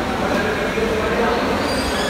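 Canteen background noise: a steady low rumble with indistinct voices mixed in.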